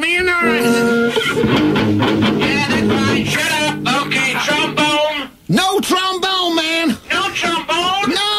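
Rock music with electric guitar and bass guitar playing, its notes swooping up and down in pitch, with a brief break about five seconds in.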